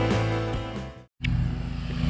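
Background music fading out, then after a brief cut a steady low engine hum, like a motor idling.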